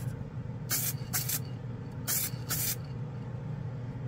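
KBS Diamond Clear gloss aerosol spray can giving four short hissing bursts, in two quick pairs about a second apart, over a steady low hum.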